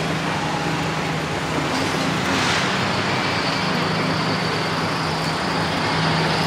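Street traffic noise: a steady rush of road noise over a low engine hum, swelling about two seconds in as a vehicle passes.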